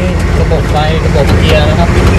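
Military vehicle engine running with a steady low drone, heard inside the cab under a man's speech.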